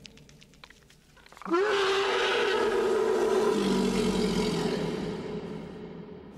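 The Predator creature's roar, a film sound effect: a brief rattle of clicks, then about one and a half seconds in a single long, loud roar that holds for about four seconds and fades away.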